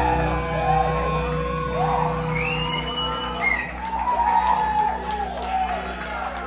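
A live rock band's amplified guitars ringing out on a held chord as a song ends, with the crowd whooping and shouting over it.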